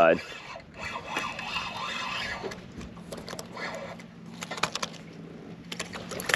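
Spinning reel being cranked as a hooked speckled trout is fought toward the boat: a soft, uneven mechanical whir with a few light clicks. A low steady hum runs underneath from about two seconds in.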